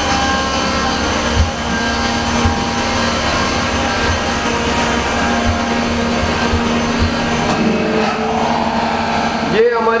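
CNC machine-shop running noise: a steady mechanical hum with several steady tones over a low rumble, and a few low bumps.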